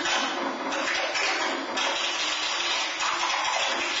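Hissing, rushing noise music from an experimental live performance with a brass instrument and electronics: unpitched, airy sounds that change every half second or so.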